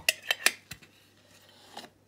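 Sharp metallic clinks and knocks of a Funko Soda tin can being handled and set down on a shelf. There is a quick run of clinks in the first half second, then single knocks about three quarters of a second in and again near the end.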